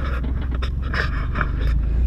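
Pickup truck engine running as the truck pulls away down a dirt road, a steady low rumble with scattered short crunches over it.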